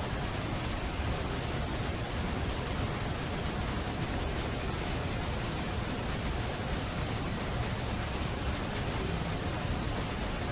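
Steady hiss with a low rumble and a faint steady hum, unchanging throughout, with no distinct events.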